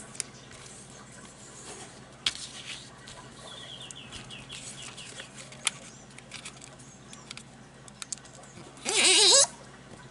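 Soft rustling and creasing of origami paper as it is folded and pressed flat, with scattered small clicks. Near the end comes a loud, brief, wavering pitched cry lasting about half a second.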